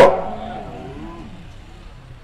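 A pause in a man's loud speech through a public-address system: his last word cuts off at the start and its echo fades over about a second, leaving only faint background noise.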